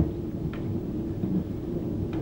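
Low, uneven rumbling background noise with a faint click about half a second in.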